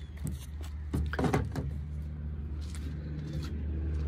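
A few clicks and a door-like knock about a second in as the Tesla Model Y's driver's door is opened after unplugging from the charger, followed by a steady low hum that slowly grows louder.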